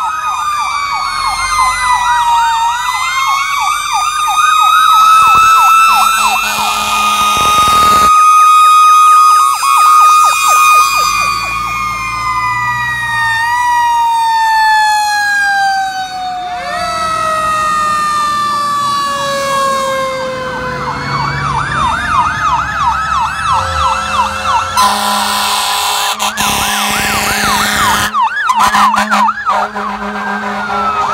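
Several fire truck sirens sounding at once as the trucks pass: a fast electronic yelp at the start and again later, slower wails, and a long falling glide like a mechanical Q siren winding down. Near the end, steady low air horn blasts sound over the sirens.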